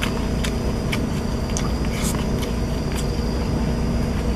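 A person chewing and eating with the fingers: short, scattered mouth clicks and smacks over a steady low rumble.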